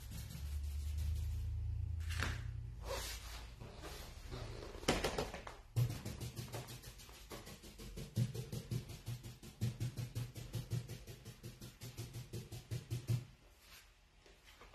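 Paint being dabbed and patted onto a cabinet panel by hand, making quick even taps against the panel, about four a second, from about six seconds in until near the end. A few separate knocks come before them.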